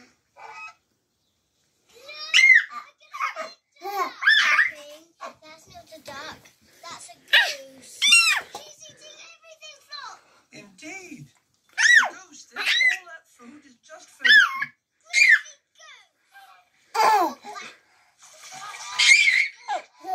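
A toddler laughing and squealing in a string of short, high-pitched bursts, starting about two seconds in and coming again and again.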